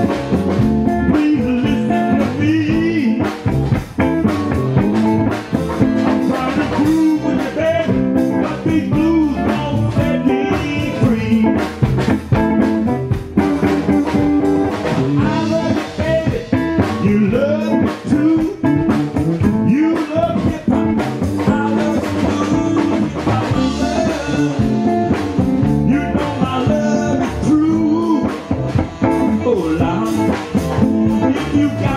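Electric blues band playing live, electric guitar prominent.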